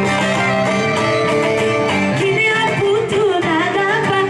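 Live Greek folk music: a laouto (bowl-backed lute) plucked under a singing voice, the melody held in long, wavering, ornamented notes.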